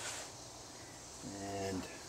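Faint, steady high-pitched insect chirring in the background, with a man's drawn-out "and" near the end.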